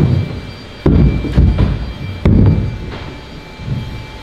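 Large hollow plastic RV water tanks being shoved and knocked against each other and the concrete floor: three loud, booming thuds about a second in, a moment later, and past the halfway point, with lighter knocks between.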